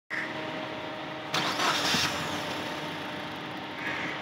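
Ford Fiesta four-cylinder petrol engine running at idle, heard from over the open engine bay. About a second and a half in, a louder hissing surge lasts under a second before the steady idle returns.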